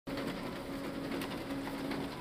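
High-speed paper-ballot scanner running, feeding ballots through with a steady machine hum and fast, even ticking.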